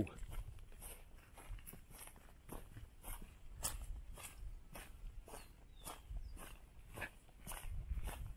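Footsteps on a gravel road, about two steps a second.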